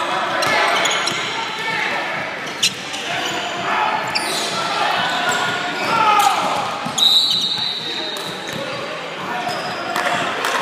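Basketball game in a gym: a ball bouncing on the court amid indistinct voices of players and spectators echoing in the hall, with a sharp knock about two and a half seconds in and a short high-pitched tone about seven seconds in.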